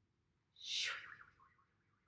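A breathy rush of air about half a second in, sliding quickly down in pitch and trailing off into a faint, wavering whistle.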